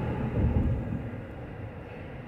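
Low rumble of a car's cabin noise, a little louder in the first half second and then steady.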